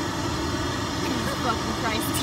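Steady car engine and cabin rumble heard from inside the car, with soft laughter near the end.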